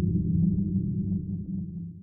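Low, deep rumble of a cinematic logo sound effect, the tail of a boom, dying away near the end.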